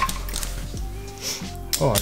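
Metal hand tools clinking and being handled against the engine, with a sharp clink right at the start and a few lighter ones after it, as a tool is fumbled and caught.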